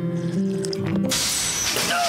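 Soft held music notes, then about a second in a sudden hissing spray: an anime spit-take sound effect of a mouthful of tea sprayed out. A strained vocal sound begins near the end.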